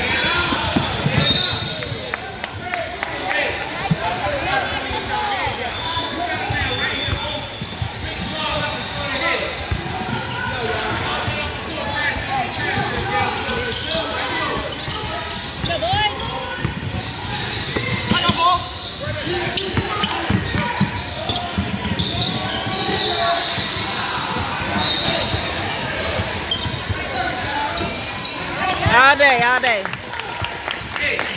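A basketball dribbled and bouncing on a hardwood court during a youth game, with sneakers moving and a steady mix of players' and spectators' voices echoing in a large gym.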